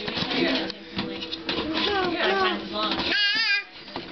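A toddler babbling and vocalizing without clear words, with a high, wavering squeal about three seconds in.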